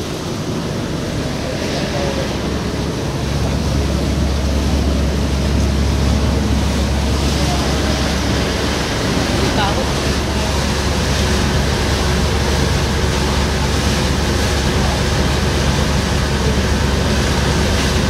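A small passenger boat's engine running with a steady low drone that grows louder about three seconds in. Over it is the rushing of the churning wake and wind.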